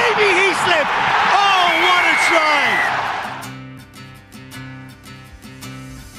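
Stadium crowd noise from a rugby broadcast, loud, with shouting voices and a long high tone near the middle; it fades out about halfway through as quiet background music with a steady beat takes over.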